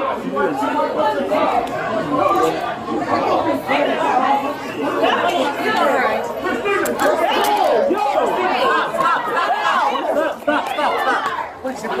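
Several people's voices talking over one another at once, loud and jumbled, with no single voice standing out.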